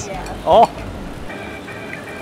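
Spa jets churning the water in a steady rush, under background music, with a short voice about half a second in.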